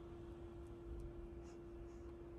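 Faint scratching and rustling of kittens' paws and claws against a plush toy and fabric, over a steady low hum.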